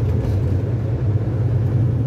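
Steady low rumble of engine and road noise inside a moving vehicle's cabin at highway speed.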